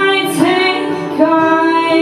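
Woman singing lead vocal in a live pop-folk band performance, holding and sliding into long notes over acoustic guitar, bass and drums.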